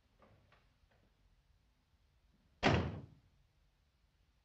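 A door slams shut once, sudden and loud, about two and a half seconds in, after a few faint clicks.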